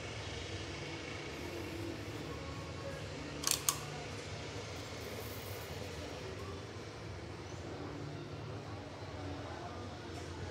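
A steady low background hum, with two short sharp clicks close together about three and a half seconds in while a cap is being handled.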